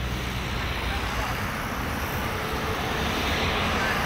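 Road traffic passing on a busy city bridge, a steady rumble and hiss of tyres and engines that swells near the end as a vehicle passes close by.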